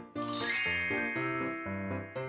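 A bright chime sound effect: a quick rising shimmer of high, bell-like tones about a quarter second in that then rings out and fades. Light children's background music with a steady pattern of notes plays underneath.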